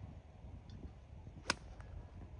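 A golf iron striking the ball on a full swing from the fairway: one sharp crack about one and a half seconds in, over a faint low rumble.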